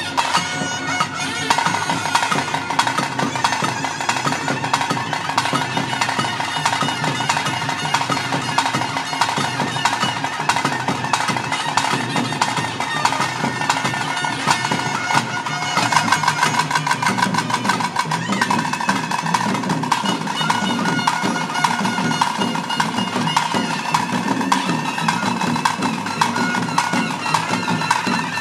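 Traditional Tulu kola ritual music: a reedy wind instrument holds a steady, piercing melody over fast, continuous drumming.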